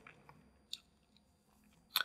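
Near silence in a pause in a man's talk, broken by a faint click a little under a second in and a short mouth click just before he speaks again.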